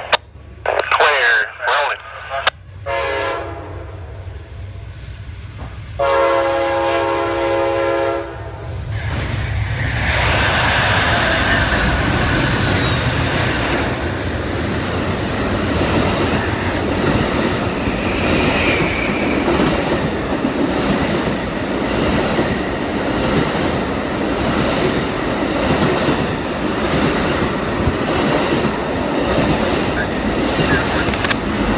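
Amtrak Auto Train locomotive horn sounding several short blasts, then a long blast lasting a couple of seconds. The train then passes close by with a steady loud rumble and rolling wheel noise from its long string of passenger and autorack cars.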